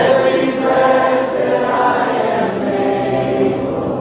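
A large congregation singing a worship song together, many voices holding long sung notes, with a new phrase swelling in at the start.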